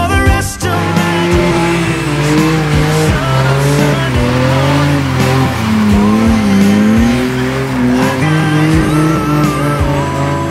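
BMW E46 3 Series drift car doing a burnout: the engine held at high revs, its pitch wavering, while the spinning rear tyres squeal.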